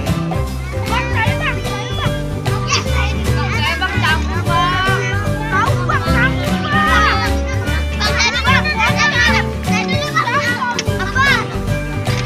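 Children chattering and calling out in a crowd, over background music.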